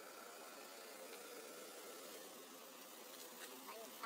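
Faint, steady insect buzzing, like flies droning close by, over a low background hiss.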